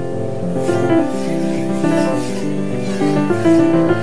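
Piano music, with notes and chords ringing out and changing every second or so.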